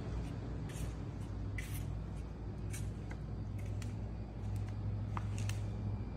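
Steady low machine hum, with a few brief ticks and hisses scattered through it.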